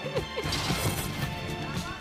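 A woman laughing for the first half-second, then a sudden crash-like hit about half a second in, with music underneath.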